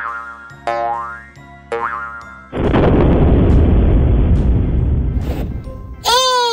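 Children's cartoon background music with three quick rising boing-like sound effects. About two and a half seconds in, a loud, low rumbling sound effect starts, lasts about three seconds and cuts off suddenly.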